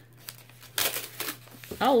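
Paper-like embroidery stabilizer crinkling and rustling as it is peeled by hand from a hoop, with a louder papery burst a little under a second in.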